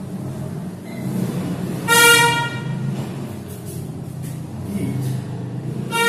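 A vehicle horn sounds two short blasts, the louder about two seconds in and another near the end, over a steady low background rumble.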